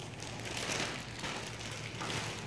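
Plastic sandwich-bread bag rustling softly as a slice is taken out.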